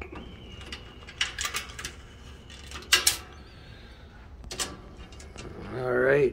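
Steel tape measure being handled and pulled out against a metal brooder deck: a few scattered clicks and knocks, the sharpest about three seconds in.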